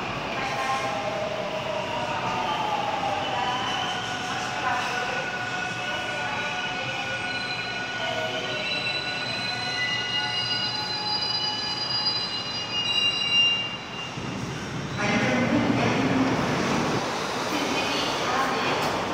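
A Seoul Subway Line 7 train pulls into the station and brakes to a stop, its motors whining in several tones that slide and fall as it slows. About fifteen seconds in, a louder rush of noise starts.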